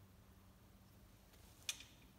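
Near silence, with a single short click near the end from the pillar drill's feed handle being worked to bring the bit down onto the wood.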